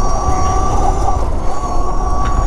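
Ather 450X electric scooter's motor whining steadily under load, climbing a steep hill in Sport mode, with a few held tones over heavy wind and road rumble on the microphone.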